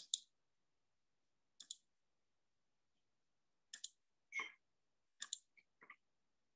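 Quiet pause broken by about six short, sharp clicks and taps at irregular intervals. The one a little past the middle is slightly longer.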